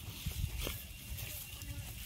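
Faint outdoor ambience: a low rumble of wind on the microphone and a couple of soft clicks from the smouldering cooking fire.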